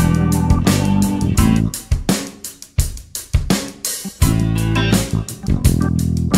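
Funk backing track in A minor on drum kit, bass guitar and rhythm guitar, with no lead part. About two seconds in, the bass and guitar drop out for a two-bar break of separate drum hits, and the full groove comes back in just after four seconds.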